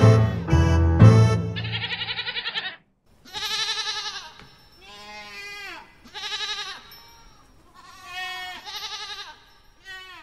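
The song ends on loud final chords and a held, trembling note that cut off a little under three seconds in. Then a sheep bleats about five times, each call wavering and under a second long.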